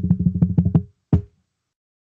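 Drum roll of rapid, even strokes that stops a little under a second in, followed by one short closing drum hit just after a second in.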